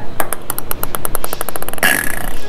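A small hard ball bouncing on a hard floor, the bounces coming faster and faster as it settles, then a short noisy burst near the end.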